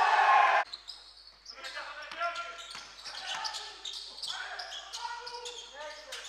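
Basketball being dribbled on a hardwood court during play, with voices echoing in the hall. A louder sound at the very start cuts off abruptly about half a second in.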